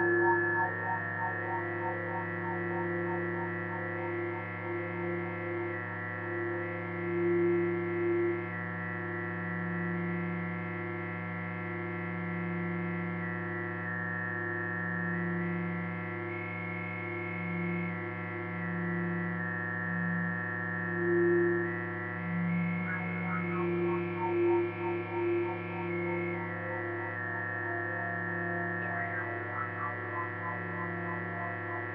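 Background music: a steady drone of held tones, with a flickering texture at the start and again about three-quarters of the way through.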